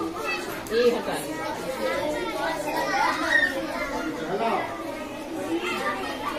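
Many children's voices chattering at once, overlapping and talking over one another.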